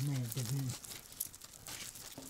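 A voice briefly at the start, then faint crinkling and small dry crackles from hands pulling a dried root off a string garland of roots.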